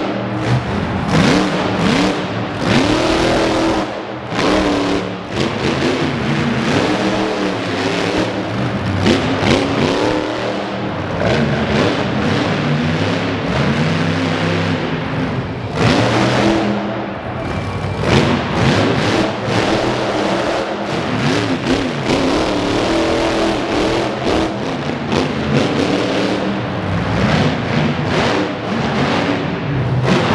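Monster truck engine revving hard, its pitch climbing and dropping again and again, with heavy knocks as the truck drives over and crushes junk cars.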